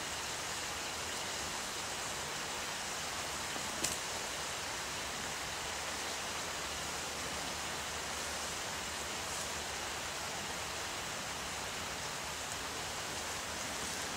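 Steady, even hiss of rain falling on the closed plastic roof of an orchard cover, with one faint tick about four seconds in.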